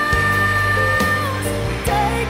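Live pop music: a female singer holding one long high note over a band with bass and guitar. The note ends a little past a second in, and near the end a voice comes in again with vibrato.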